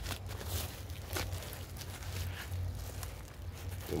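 Black plastic wrapping and corrugated cardboard rustling and crackling as a package is pulled open by hand, with a few sharp crackles in the first second or so. A steady low hum runs underneath.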